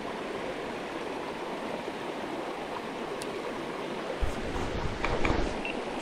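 Shallow rocky creek running over stones, a steady hiss of riffling water. A burst of low rumbling comes in about four seconds in and lasts about a second.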